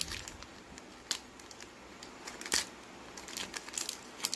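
Foil Pokémon Cosmic Eclipse booster pack wrapper being crinkled and torn open by hand: a few sharp crackles about a second in and halfway through, then a quick run of small crackles near the end. A throat clears at the very start.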